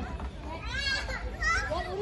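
Children playing and calling out at a playground, with two high-pitched cries, the first just over half a second in and the second about a second later.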